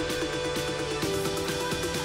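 Electronic dance music with a steady beat, about four beats a second, under sustained synth tones.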